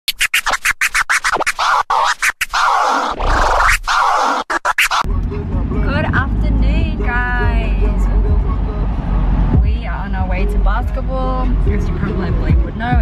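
Turntable scratching in a rapid, chopped stutter for about the first five seconds, then it cuts to the steady low rumble of wind and road noise in an open-top car, with voices over it.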